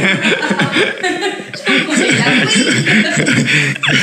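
Two men laughing together, a loud, continuous run of chuckles in quick bursts.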